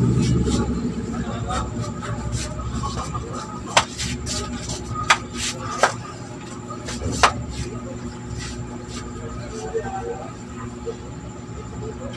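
A passing motor vehicle's engine fading away over the first two seconds, then a quieter background with scattered small clicks and four sharper clicks between about four and seven seconds in.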